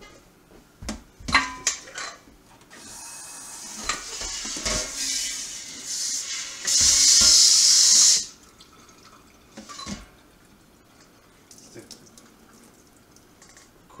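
A homemade bottle-washer jet spraying water up inside an upturned stainless-steel sanke keg to rinse it out, with a few knocks of the metal keg being handled at the sink. The spray builds over a few seconds, is loudest for about a second and a half just past the middle, then cuts off suddenly.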